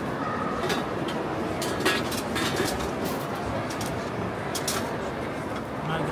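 Crowd hubbub: a steady babble of many voices, with a handful of sharp clinks and clatters scattered through it, the loudest about two seconds in.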